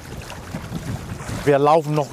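Several people wading through thigh-deep shallow seawater, their legs sloshing and splashing through the water in a steady rush of noise.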